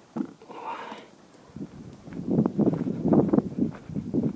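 Footsteps on dry dirt and leaves, an irregular run of thuds that grows louder in the second half, with a knock and a short rustle near the start.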